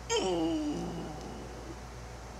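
A single meow-like call, falling in pitch over about half a second and sliding lower still as it fades.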